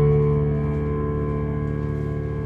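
A chord held on a Yamaha CP stage piano, its tones steady and slowly fading away, as the song's closing chord dies out.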